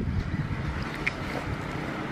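Wind rumbling steadily on the microphone.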